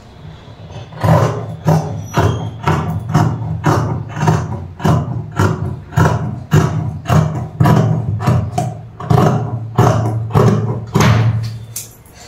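Large tailor's shears cutting through a folded blouse piece of fabric along chalk lines: a steady run of crisp blade snips, about two to three a second, starting about a second in and stopping just before the end.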